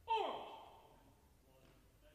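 A single loud shouted drill command from a man's voice, its pitch dropping sharply, then echoing away in a large hall.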